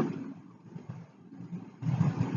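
A low, uneven background rumble that fades through the middle and grows louder again near the end.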